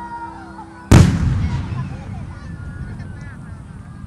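A large aerial firework shell bursting high overhead: one sudden loud boom about a second in, its rumble rolling on and fading over the next seconds.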